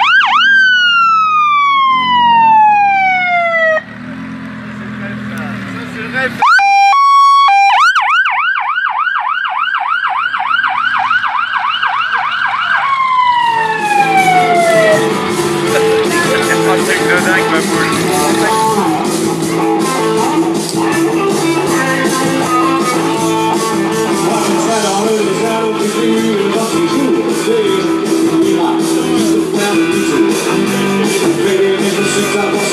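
Police car siren: a wail sweeping down over a few seconds, then a fast yelp that winds down about fifteen seconds in. Rock music with electric guitar and bass follows for the rest of the time.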